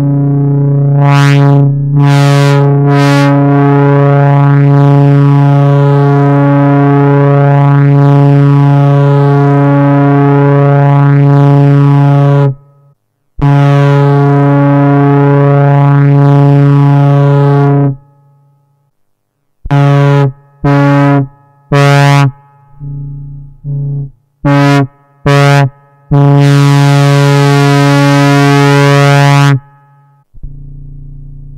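EMS Synthi AKS analog synthesizer sounding a loud, steady low note at one pitch, flaring brighter three times in the first few seconds and held for about twelve seconds. It cuts out twice, then returns as a run of short stabs and a final held note with hiss laid over it.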